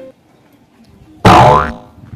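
A short, very loud comic sound effect of the boing kind about a second in, its pitch sliding upward before it dies away within half a second.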